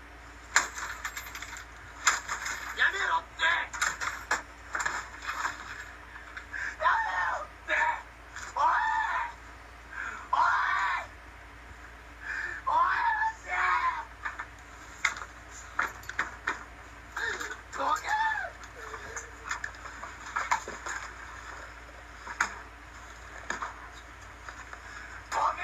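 A video played back through a small speaker and re-recorded: high-pitched yelling voices with sharp cracks and knocks throughout, as a game console is being smashed.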